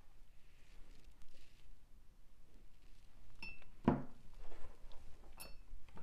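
Two short ringing clinks about two seconds apart, with a duller knock between them: a paintbrush knocking against a hard container and being set down.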